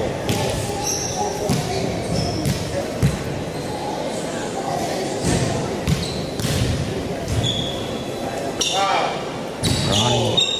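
A basketball bouncing on a hardwood gym floor, with irregular sharp strikes and a few short high squeaks, in a large echoing hall.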